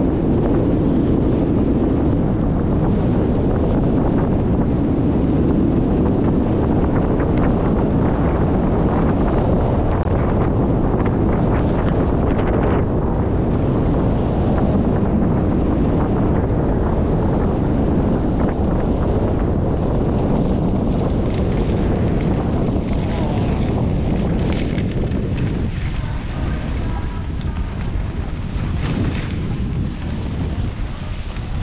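Wind buffeting the microphone of a pole-held camera while skiing downhill: a loud, steady rush that eases a little near the end as the skier slows.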